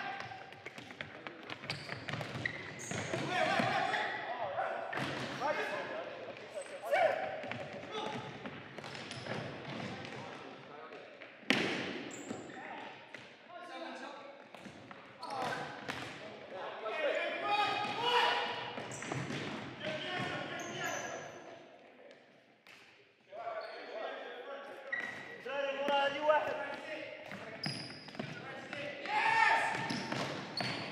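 A futsal ball being kicked and bouncing on a wooden sports-hall floor, each hit a sharp thud that echoes in the large hall. The loudest strike comes about a third of the way through, and players' indistinct shouts come and go throughout.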